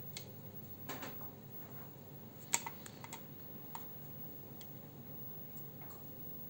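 Handling noise from a hand-held phone camera being moved: a few scattered light clicks and taps, the sharpest about two and a half seconds in, over a low steady hum.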